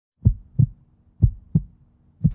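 Heartbeat sound effect: two double beats of deep, dull thumps, each a lub-dub pair, about a second apart.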